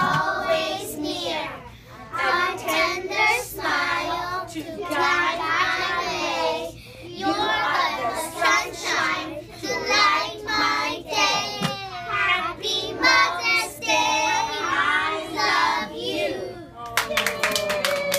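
A group of young children singing together, with clapping starting near the end.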